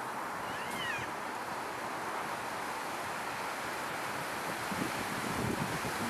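Bull elk working its antlers in the branches of a small evergreen, with rustling and crackling of twigs and needles that gets louder near the end, over steady wind hiss. A single short high call, rising then falling, sounds about a second in.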